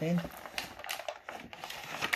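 Cardboard toy box and clear plastic blister tray being opened and handled: a run of crinkles, scrapes and sharp little clicks.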